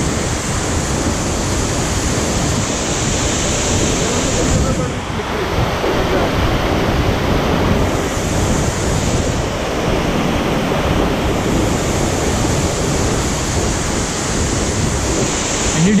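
Steady rush of a waterfall and the white-water stream running among the boulders below it.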